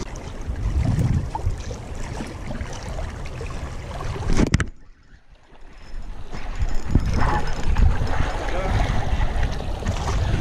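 Wind buffeting the microphone of a camera worn on the body, over the wash of the sea against the rocks. A click about halfway through, then the sound drops out for about a second before the wind noise returns.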